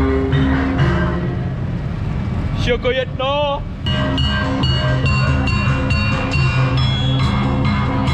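Javanese gamelan music: metallophones striking a run of pitched notes, with a brief wavering voice-like tone about three seconds in, then the ensemble continuing with drums from about four seconds in.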